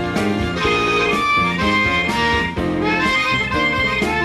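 Live blues band: a harmonica plays held, bending notes over a drum kit and electric guitar.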